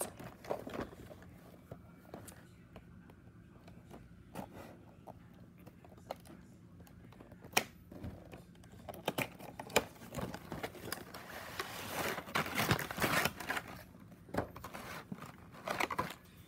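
Hands opening a toy train's cardboard and plastic packaging: scattered taps and clicks, two sharper ones around the middle, then a busier stretch of rustling and crinkling in the later part, over a faint steady hum.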